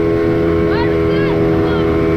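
Outboard motor of a small boat running steadily under way, holding one even pitch, with water rushing past the hull.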